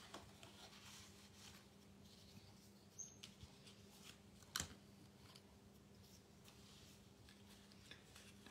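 Near silence with faint paper handling: cardstock strips being moved and laid on a scrapbook page, with a soft tap about four and a half seconds in, over a faint steady hum.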